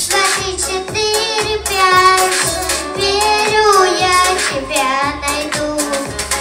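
A young girl singing through a microphone over a pop backing track with a steady beat.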